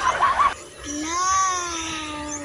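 Laughter at the start, then one long drawn-out call, like an animal's, lasting about two seconds, rising a little in pitch and then holding steady.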